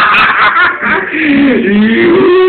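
Men laughing and snickering, giving way in the second half to a drawn-out voice that slides down in pitch.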